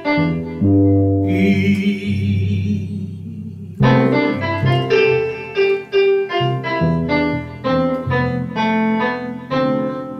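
Two electronic keyboards played together in a slow, gentle piano-style passage of bass notes and chords. A high wavering tone sounds over held low notes from about one to four seconds in, then new notes are struck steadily.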